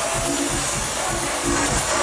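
Tribal house music played loud over a nightclub sound system during a DJ set, with a steady kick-drum beat and short, repeating bass-synth notes.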